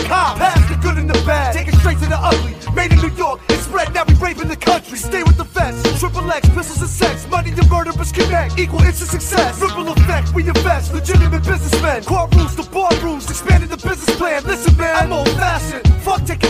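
Hip hop track with heavy sustained bass, hard drum hits and a rapped vocal over it.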